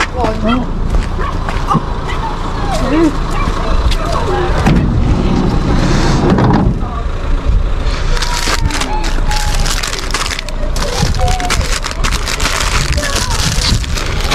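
Plastic food packaging rustling and crinkling as bags of bread rolls and chocolate-bar packs are pulled from a packed van, with the crackle thickest in the second half. Voices are heard in the first few seconds, over a steady low rumble.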